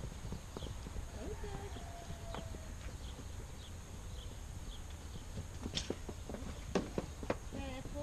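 Horses' hooves on dry, packed dirt: an irregular run of steps as the horses walk and trot about, with a few sharper, louder knocks in the last couple of seconds.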